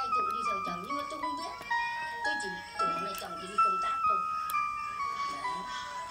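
Casio VL-1 monophonic synth played through a Katana Mini amp with delay: single held notes moving in steps, descending over the first two seconds and then climbing back to a long high note. A voice talks underneath.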